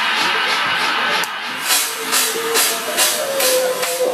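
House music from a live club DJ set, with a steady beat of high percussion hits about two a second. About a second in the music briefly thins out and dips, then a held synth note comes in and rises in pitch near the end.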